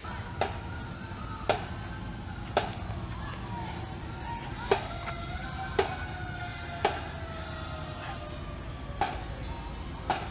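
Street parade sound: a drum struck about once a second while a long siren tone slowly winds down in pitch, as from a fire engine in a homecoming parade.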